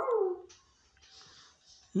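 A person's voice makes a short vocal sound that rises and then falls in pitch and lasts about half a second. Only a faint rustle follows.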